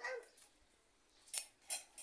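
A voice trails off at the start, then near silence broken by two sharp clicks in the second half, a third of a second apart.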